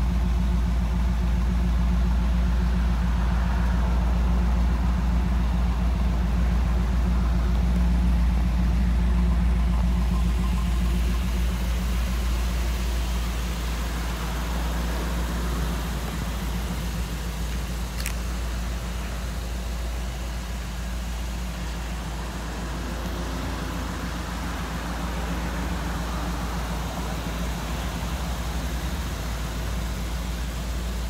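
A 1969 Chevrolet C10's 350 small-block V8 idling steadily, easing slightly in level about a third of the way in. A single sharp click a little past the middle.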